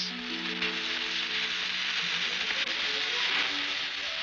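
Cartoon background music holding a few sustained notes over a steady hiss, the sizzle of a lit dynamite fuse burning.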